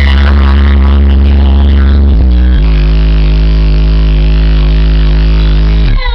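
A car subwoofer system of four 15-inch Sundown subwoofers plays bass-heavy electronic music at very high volume, with long sustained bass notes. The bass note changes a little over two seconds in and drops out near the end.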